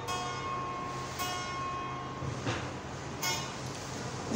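Electric guitar picked softly: a few single notes and chords about a second apart, each left ringing.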